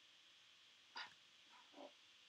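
Near silence: quiet room tone, broken by one sharp click about a second in and a brief faint sound near the end.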